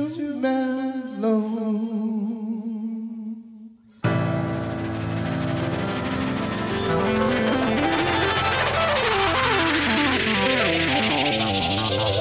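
Live band music: a held, wavering note fades almost to nothing, then about four seconds in the band comes back in abruptly and loud with electric keyboard, sliding electronic effect tones and a hiss sweep that rises toward the end.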